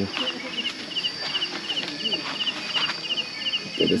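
Crickets chirping at night, short pulsed trills repeating about twice a second in an even rhythm, over a steady high-pitched hum.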